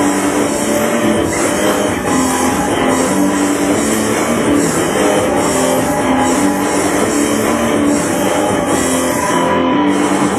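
Loud instrumental passage of an industrial rock song, with electric guitar playing over a steady beat and no singing.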